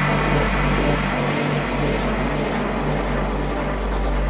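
Electronic drone music: a dense, noisy wash over steady deep bass tones, with no clear beat.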